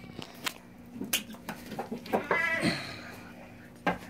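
Young doe goat bleating once, a short wavering bleat about two seconds in, as she struggles against being held for hoof trimming. A few sharp knocks come before it and just before the end.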